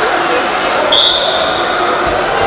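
Referee's whistle blown once about a second in, a short steady high note, over voices in a sports hall as the bout restarts from standing.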